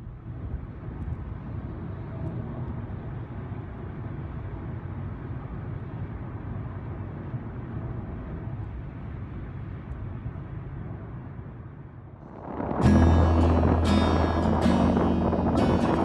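Steady low road rumble inside a car cruising on a motorway, fading in at first. About thirteen seconds in it cuts abruptly to much louder music with a low bass and sharp beats.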